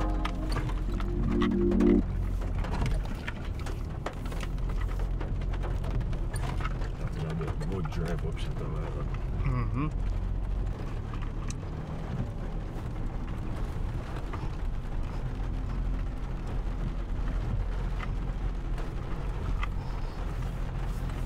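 Music ends about two seconds in, leaving the steady low rumble of a VW Amarok pickup heard from inside the cabin as it crawls over a rough, rocky dirt track, with scattered knocks and faint indistinct voices.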